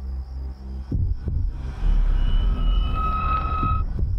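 Horror trailer score and sound design: two deep booming hits about a second in, then a swelling low rumble with steady high whining tones that grow louder and cut off sharply just before the end.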